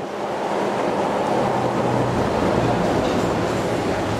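Steady rumble of vehicle noise, with a low engine-like hum that grows stronger a little over a second in.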